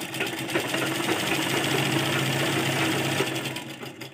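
Deepa sewing machine stitching a seam in one continuous run, a fast, even rattle of stitches. It picks up speed at the start and slows to a stop near the end.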